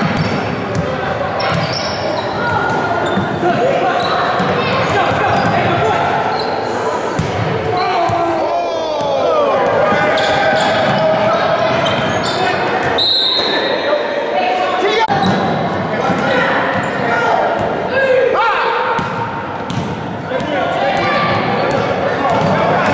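A basketball being dribbled on a hardwood gym floor, with players and spectators calling out indistinctly over it.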